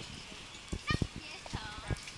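A few short, sharp knocks or clacks, clustered about a second in with one more near the end, over low street background with faint distant voices.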